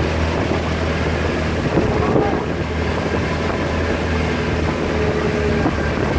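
Engine of a bamboo-outrigger motor boat running steadily while under way, a constant low hum. Wind on the microphone.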